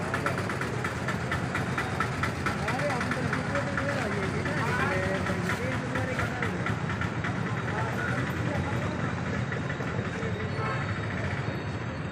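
Indistinct voices of several people talking, over a steady low hum of street traffic.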